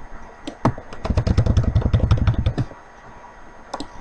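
Computer keyboard keys clicking in a quick, dense run of keystrokes lasting about two seconds, then a couple more key or mouse clicks near the end.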